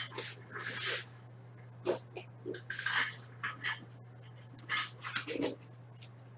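Trading cards and packaging being handled on a table: short, irregular rustles and scrapes a second or so apart, over a steady low electrical hum.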